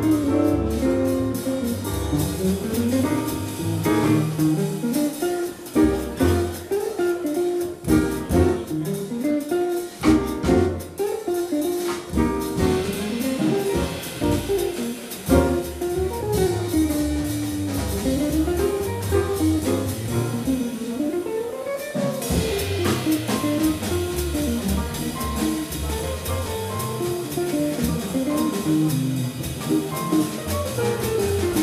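Live jazz quartet playing: an archtop guitar takes quick melodic runs that climb and fall, over walking upright bass, piano and a drum kit with ride cymbal.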